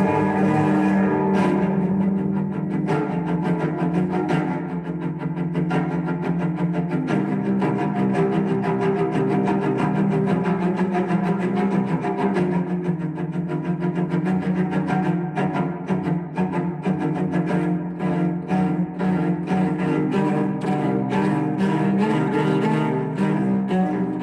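Solo cello playing a prelude: a continuous run of bowed notes changing several times a second.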